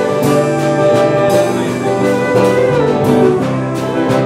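Live country gospel band playing an instrumental passage: a bowed fiddle over strummed acoustic guitars, electric guitar and a drum kit keeping a steady beat.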